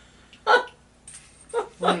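A single short, sharp yelp-like vocal sound about half a second in, between otherwise quiet moments.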